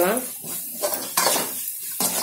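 A metal spoon scraping and stirring a thick spice paste around a large metal kadai, in several short strokes over a light sizzle of frying.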